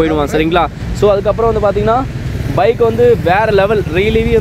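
A voice with curving, drawn-out pitch that pauses briefly in the middle, over the steady low running of a motorcycle engine.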